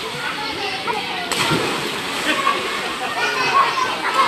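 Pool water splashing and sloshing as people swim, under a steady mix of overlapping voices and shouts from the swimmers, with one sharper noise just over a second in.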